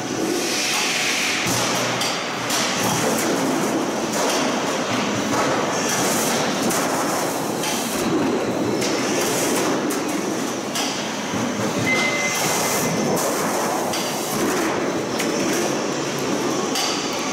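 Glazed step-tile roll forming machine running: a steady clattering mechanical noise from the roller stations and drive, with irregular knocks every second or two.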